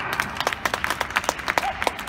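Scattered applause from a small crowd: sharp, separate hand claps at an uneven rate, greeting the end of a point in a tennis doubles match.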